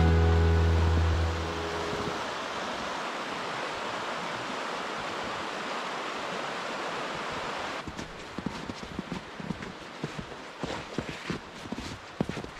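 The tail of background music fades out, leaving the steady rush of a river in full flow. About eight seconds in, the rush drops and irregular footsteps in fresh, heavy snow begin.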